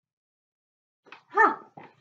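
A dog barks once, briefly, about a second and a half in, after a stretch of silence.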